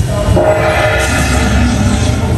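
Dragon Link Panda Magic slot machine playing its Lucky Chance Spin sound effect after the dragon is chosen: a held chord of steady tones starts about a third of a second in, and a rush of noise joins it about a second in, over a low casino hum.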